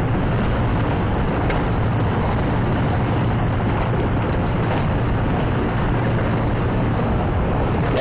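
Steady wind rushing over the microphone on the open deck of a ship under way, over a constant low rumble of the vessel's engines and churning wake.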